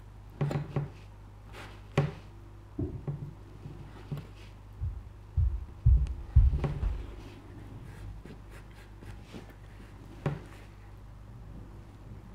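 A knife cutting small pieces one at a time off the corner of a leather panel: a series of short, irregular cuts and taps, with a few duller thumps about halfway through.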